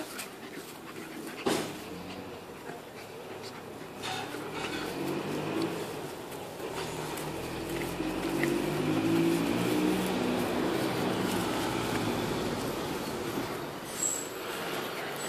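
Two puppies, an American Staffordshire Terrier and a small tan dog, play-fighting. There is one short sharp cry about a second and a half in. From about four seconds in there is low, choppy growling, loudest around the middle and easing off near the end.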